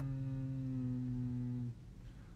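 A man humming one long, steady closed-mouth 'mmm', sinking slightly in pitch and stopping shortly before the end: a thinking hum.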